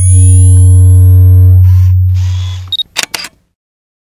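Logo sound effect: a loud, deep, steady tone lasting about two and a half seconds, with two short hissing swishes during it. It is followed a little before three seconds in by a brief high beep and a quick run of camera-shutter clicks.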